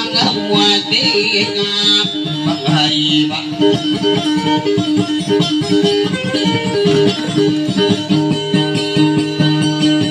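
Guitar playing dayunday music: a fast, even run of repeated plucked notes, with a lower bass line coming in about two seconds in.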